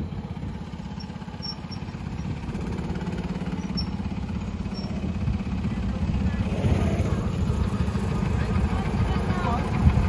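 Go-kart engines running with a steady low putter, getting gradually louder through the second half.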